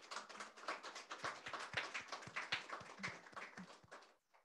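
Audience applauding: many hands clapping densely, dying away near the end.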